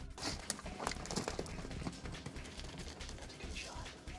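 Blue wildebeest bolting, hooves clattering and knocking irregularly on stony ground, starting with a sudden burst of noise.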